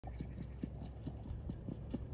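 Hoofbeats of a harness trotter trotting on a sand-gravel track, an even beat of about four to five knocks a second.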